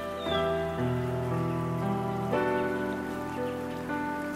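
Slow relaxation music of sustained, melodic held tones, the chord changing about two and a half seconds in, laid over a steady recorded rain sound. A short high falling note sounds just after the start.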